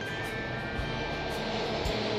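Steady drone of a motorbike ride: engine noise mixed with wind and road noise on the moving camera.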